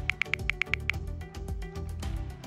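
Background music: a quick ticking pulse, about eight ticks a second, over a low sustained bass. The ticks fade about halfway through.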